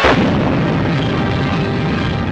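Explosion sound effect on an old 1940s film soundtrack: a sudden blast right at the start, then a long, rough rumble that carries on.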